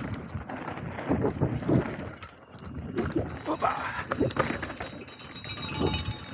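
Mountain bike running fast down a dirt singletrack: tyres on loose earth and leaves, the bike rattling over bumps, and wind rumbling on the camera microphone. Short, hard wordless vocal bursts from the rider come every half second or so.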